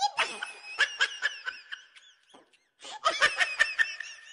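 A child laughing in quick bursts, falling quiet about two seconds in, then breaking into another run of laughter near the end.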